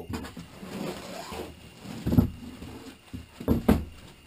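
Handling of a flak vest and its armour plates: fabric rustling as a plate panel is worked into place, then a few dull thumps about two seconds in and again near the end as the plates are pressed and knocked down.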